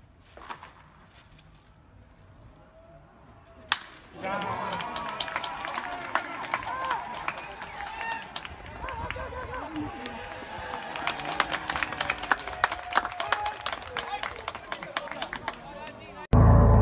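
A single sharp crack of a baseball bat hitting the ball a little under four seconds in. The crowd then breaks into cheering and clapping, many voices at once, and keeps it up.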